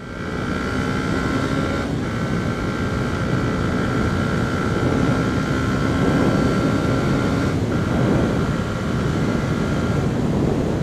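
Yamaha WR125X single-cylinder four-stroke supermoto running under way and gathering speed, its engine note briefly dropping out for gear changes about two seconds in and again about seven and a half seconds in, with wind rush on the helmet camera underneath.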